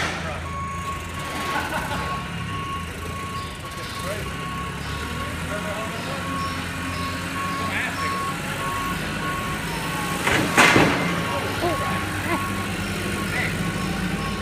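Forklift reversing alarm beeping evenly at one pitch over the steady low running of its engine. About three-quarters of the way through there is one loud clunk.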